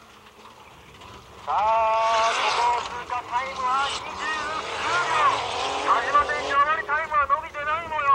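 Rally-modified sports car's engine revving hard on a dirt course, its pitch climbing and dropping through gear changes and throttle lifts. It comes in loud about a second and a half in and swings up and down quickly near the end.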